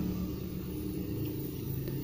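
A steady low background hum or rumble, with nothing sudden standing out.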